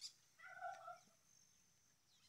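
Near silence outdoors, broken by one faint, brief animal call about half a second in.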